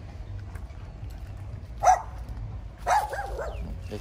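A dog barking: one short bark about two seconds in, then a quick run of barks about a second later.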